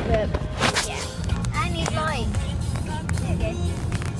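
Low steady rumble of a moving car heard from inside the cabin, with music and voice sounds over it. There is a short handling bump or rustle at the microphone just under a second in.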